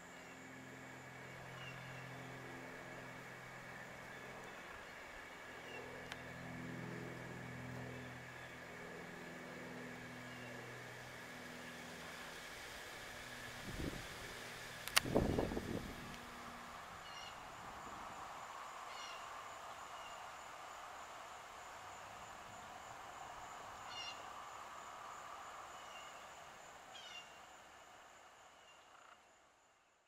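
Faint woodland ambience with a steady high insect drone. Low pitched calls come and go through the first half, a short louder noise comes about halfway, and the sound fades out near the end.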